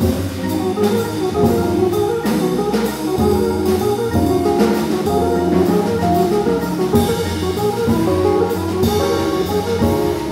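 Jazz organ trio playing a blues: electric archtop guitar, organ and drum kit together, with the organ also carrying the low bass notes and cymbals sounding over the top.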